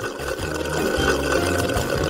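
Milkshake being sucked up through a long drinking straw: a steady slurping.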